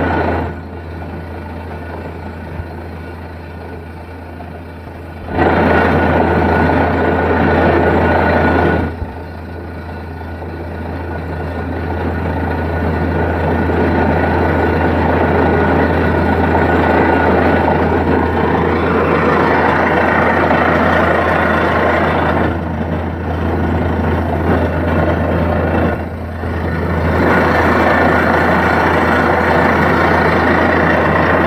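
Borewell drilling rig running, its engine a steady low drone under a loud rush of compressed air and water blowing out of the borehole, the sign that the bore has struck water. The rush falls back from about half a second in to about five seconds, dips again briefly near nine seconds, then builds back up.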